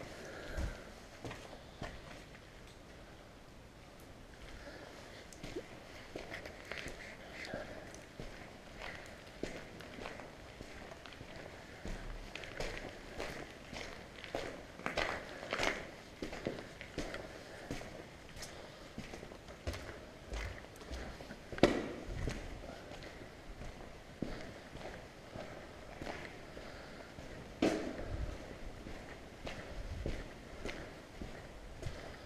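Footsteps walking over a debris-strewn industrial floor, an irregular run of scuffs and knocks with two sharper knocks, one about two-thirds through and one near the end.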